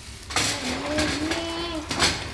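Fish cakes sizzling in a frying pan under one long, slowly rising hummed or drawn-out voice, ending with a sharp knock as a metal salad bowl is set down on the wooden table.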